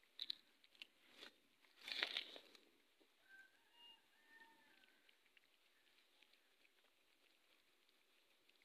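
A cat eating from a plastic food packet: a few crinkles and crunches of the packet and food in the first two and a half seconds, the loudest burst about two seconds in, then near quiet.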